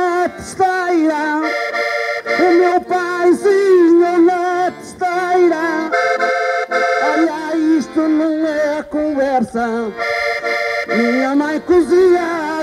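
Accordion playing a traditional Portuguese folk tune on its own, the instrumental break between sung verses of a desgarrada. Running melody lines alternate with held chords about every four seconds.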